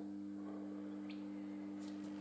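Faint steady low hum with no other events.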